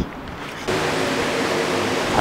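Rain falling, a steady hiss that comes in abruptly about two-thirds of a second in.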